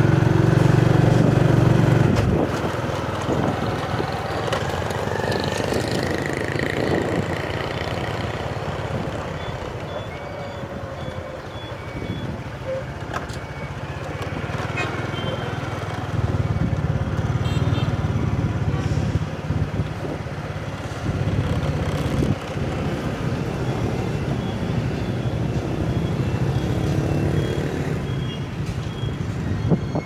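Road traffic going by: motorbike and heavier vehicle engines pass, loudest at the start and again through the second half.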